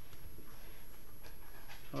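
Pen drawing a line along a plastic ruler on paper: faint, short scratching strokes over steady room hiss.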